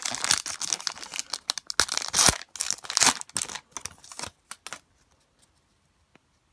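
Trading-card pack wrapper being torn open and crinkled: dense crackling rustles through the first three and a half seconds, the loudest rip a little past two seconds in, then a few scattered crinkles before it goes still.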